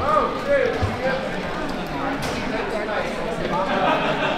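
People's voices, talking in a busy indoor dining area.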